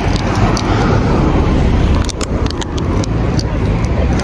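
A steady low rumble, with a quick run of sharp clicks and rustles around the middle.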